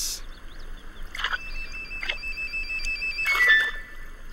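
Cartoon sound effect: a high, warbling electronic-sounding tone held for about two seconds, with soft swishes around it and a short blip near the end.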